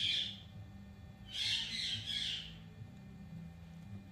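Indian ringneck parakeet giving two harsh squawks: a short one at the start, and a longer one about a second and a half in that lasts just over a second.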